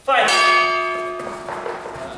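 A timekeeper's bell struck once, ringing out and fading over about a second and a half: the signal for the round to begin.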